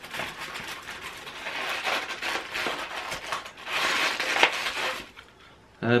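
Cardboard advent calendar door being picked and prised open by hand: card and paper crinkling and crackling with many small clicks, loudest about four seconds in, stopping about five seconds in.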